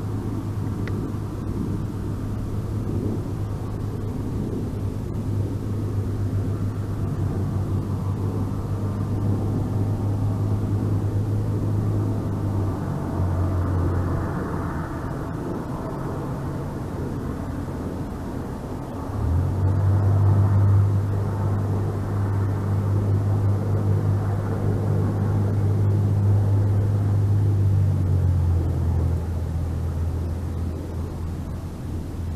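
A low, steady engine drone, such as from a vehicle or aircraft. It drops in pitch about 13 seconds in and rises again, louder, about 19 seconds in, over a rushing noise that swells and fades.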